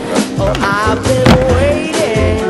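Skateboard wheels rolling and clacking on a wooden mini ramp, with a sharp knock a little past halfway, under a music track with a singing voice and a steady bass.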